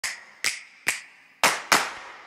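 Five sharp clap-like percussion hits: three evenly spaced, then a short gap and two in quick succession. They are the opening of a music track's beat.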